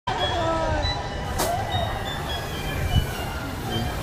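A steady low rumble with people's voices in the first second and a single sharp click about a second and a half in.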